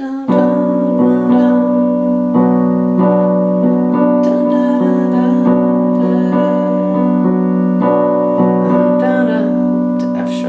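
Electronic keyboard with a piano sound playing slow, held chords, starting on B minor and restruck every second or so.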